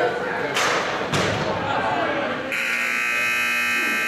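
Rink game-clock buzzer sounding one steady, unbroken electric buzz from a little past halfway, marking the end of the period. Earlier, two sharp knocks of sticks or puck on the rink, with crowd chatter.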